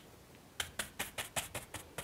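Fan brush being tapped hard against a canvas on an easel to dab in tree foliage: a quick run of about eight short taps, roughly five a second, starting about half a second in.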